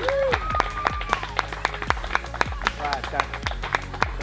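A small group clapping for a winner being called up, with a few voices, over background music with a steady beat.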